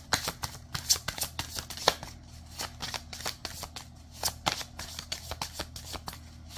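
A deck of cards being shuffled by hand, with quick, irregular slaps and riffles of the cards and a couple of short pauses.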